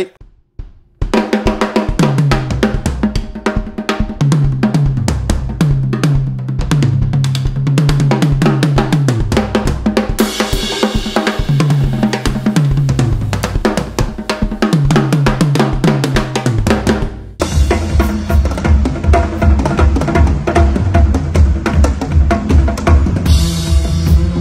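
Acoustic drum kit played hard: fast, tom-heavy fills with cymbals, the drum pitches stepping up and down. After a brief break about 17 seconds in, the playing settles into a steadier beat with a driving bass drum.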